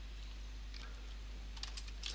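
A few faint computer keyboard keystrokes near the end, over steady low room noise.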